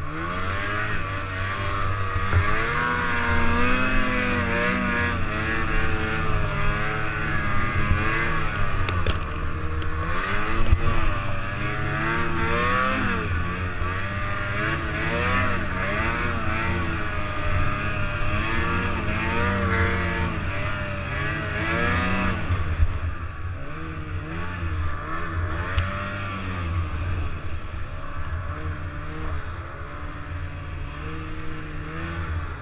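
Snowmobile engine revving up and down continually as the sled is ridden through deep powder, its pitch rising and falling every second or two. The revs ease off and the sound drops somewhat in the last several seconds.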